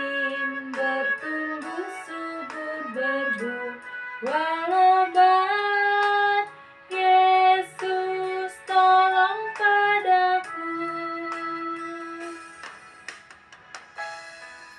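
A woman sings an Indonesian children's hymn to instrumental backing, in phrases of held notes. Near the end the song closes on one long held note, then the music fades out.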